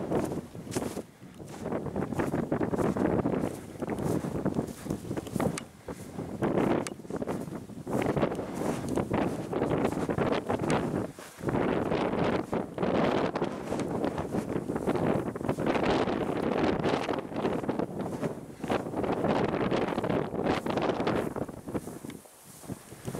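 Gusty wind buffeting the camera microphone, surging unevenly, with a few brief lulls.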